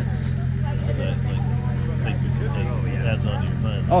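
Steady low drone of a generator engine running continuously, with people talking in the background.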